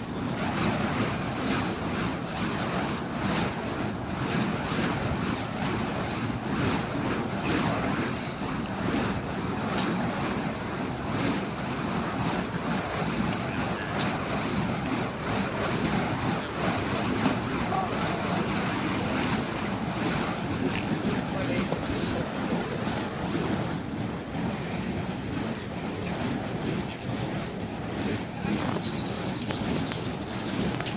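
Steady wind noise buffeting the microphone, with the rush of sea surf behind it.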